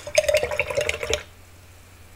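Paintbrush swished in a jar of rinse water, with small splashes and clinks against the jar and a short ringing tone, lasting about a second.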